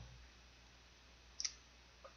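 Near silence: room tone, broken by one short, sharp double click about one and a half seconds in.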